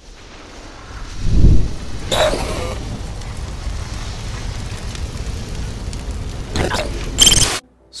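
Cinematic logo-reveal sound effect: a deep bass boom swelling about a second and a half in, a sweeping whoosh just after, then a steady low rumble. It ends in a bright, ringing hit near the end that cuts off suddenly.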